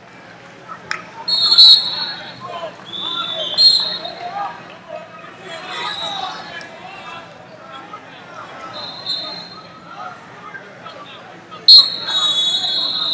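Referee's whistle blowing over crowd chatter in a gym. A loud blast comes about a second and a half in, a few fainter blasts follow, and a loud blast near the end starts the bout again from neutral.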